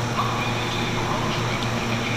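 Steady low background hum of an arcade, with faint distant voices.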